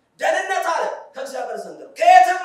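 Speech only: a man speaking into a handheld microphone in short phrases.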